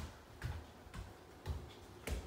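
Footsteps on hard stairs and plank flooring, a low thud about every half second.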